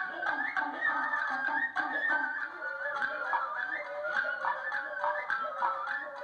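Live traditional Japanese ensemble music: several shamisen plucking with a flute playing a stepping melody over them.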